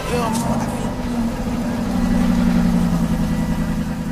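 Car engine started with the dashboard push-button, then idling steadily, the idle settling slightly lower about a second in after the start-up flare.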